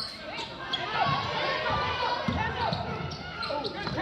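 Live basketball play on a hardwood gym floor: many short sneaker squeaks and the thuds of a ball being dribbled, with voices in the gym.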